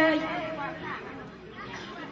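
A woman's voice singing Lượn (Tày folk song) ends on a held note that fades out within the first second. After it comes low, indistinct chatter from the audience.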